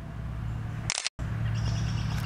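Digital camera's shutter click as a photo is taken: one short sharp snap about a second in, followed by a brief total cut-out of the sound, over a steady low background hum.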